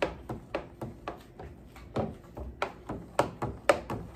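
A long-handled spoon stirring a drink in a plastic pitcher, clicking and tapping irregularly against the pitcher's sides about two or three times a second.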